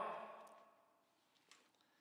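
Near silence: room tone after a spoken word dies away in the first half second, with one faint click about one and a half seconds in.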